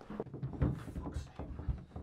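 A run of low, dull thuds, about two a second.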